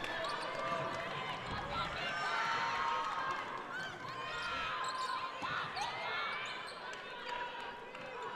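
Basketball dribbled on a hardwood gym court, with sneakers squeaking as the players move and voices from players and crowd in the hall.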